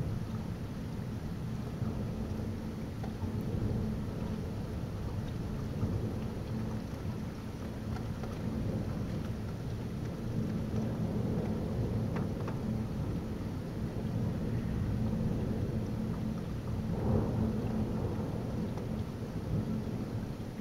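Thunderstorm: continuous low rolling thunder over steady heavy rain, a little louder about three quarters of the way in, with occasional raindrops ticking against the window glass.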